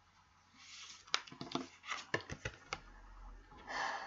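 Oversized tarot cards handled on a table: a soft slide, then a run of light clicks and taps as fingers move over the spread, and a longer slide near the end as one card is drawn out.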